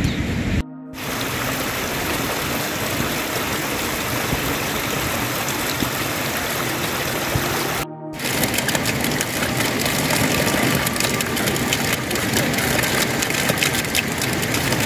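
Steady hiss of rain, dropping out briefly twice. In the second half, water running from a standpipe spout adds many crisp splashing clicks.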